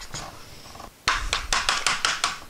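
Hands and a screwdriver working a plastic central vac hose handle apart: a quieter first second of handling, then a quick run of sharp clicks and knocks, about half a dozen in a second.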